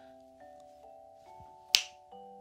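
Light background music, a plinking melody of short held notes like a glockenspiel or music box, with one sharp finger snap near the end.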